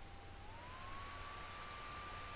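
A faint, thin steady tone over background hiss. It glides up in pitch about half a second in, then holds at the new pitch.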